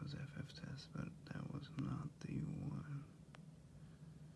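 A man speaking quietly in a low, mumbled, half-whispered voice for about three seconds, over a steady low hum. A single faint click follows near the end.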